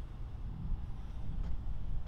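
Low, steady rumble of wind on the microphone with faint outdoor background noise; no distinct mechanical event.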